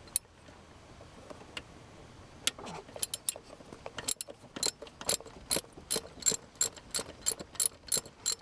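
Socket ratchet clicking as it loosens the 10 mm hold-down bolt of a 1993 Toyota Camry's vehicle speed sensor. A few scattered clicks give way, about halfway in, to a steady run of sharp clicks, about three a second.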